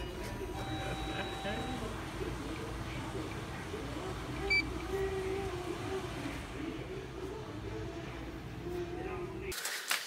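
Convenience-store background of indistinct voices and a low hum, with one short electronic beep about four and a half seconds in, as the lottery ticket is scanned at the ticket checker.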